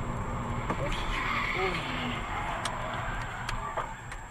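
Car cabin noise recorded by a dashcam while driving: a steady low engine and road rumble, with faint voices and a few light clicks in the second half.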